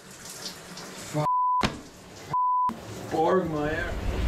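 Two short, steady high beeps about a second apart, each cutting out all other sound: censor bleeps over a man's voice. Between and around them runs the hiss of shower water in a small tiled bathroom.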